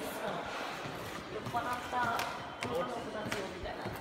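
Footsteps on the hard tiled floor of a station concourse, a few sharp clicks in the second half, among indistinct voices of people nearby.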